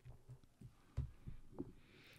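Quiet room tone with a few faint, short low thumps, the clearest about a second in.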